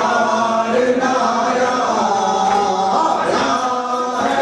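A crowd of men chanting a Shia mourning lament (noha) together in unison, the sung phrases held for about a second each and running on without a break.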